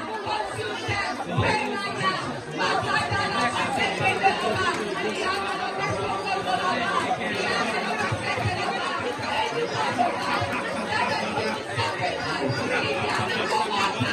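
A congregation praying aloud all at once: many voices overlapping in a continuous, unbroken stream of prayer in a large room.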